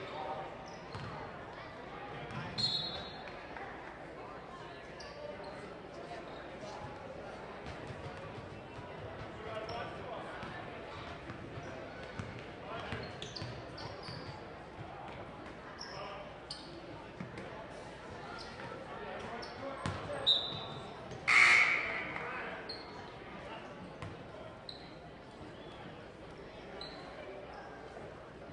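A basketball being dribbled on a hardwood gym floor, with short sneaker squeaks and a murmur of voices echoing in a large hall. About three quarters of the way in there is a brief loud burst.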